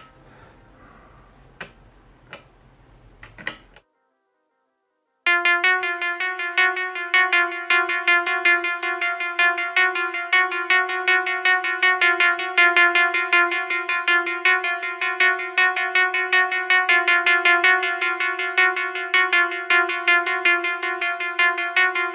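Faint clicks of buttons being pressed on an Elektron Analog Four analogue synthesizer. After about a second of silence, the synth starts a sequence: one note at a steady pitch, retriggered in a quick, even rhythm.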